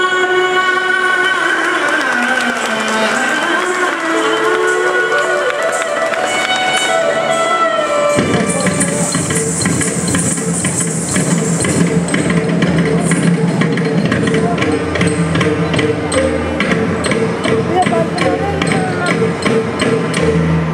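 Live Carnatic dance music. For the first several seconds a melody with gliding notes plays, and about eight seconds in mridangam drumming comes in with a fast, steady rhythm under it.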